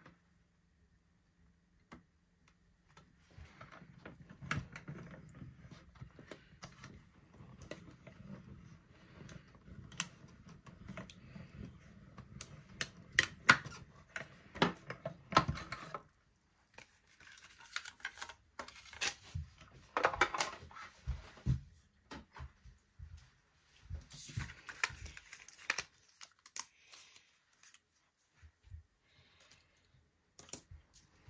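Stampin' Up! Mini Cut & Emboss die-cutting machine being hand-cranked, the cutting plates rolling through with a steady low rumble and small clicks for about the first half. Then the rumble stops and there are scattered clicks and taps as the plates and die-cut paper pieces are handled.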